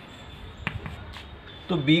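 Two light taps against a chalkboard, the first sharper, about half a second apart, over a faint steady hiss.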